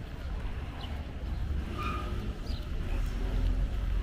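Steady low rumble of outdoor street noise, with a few faint high chirps about two seconds in.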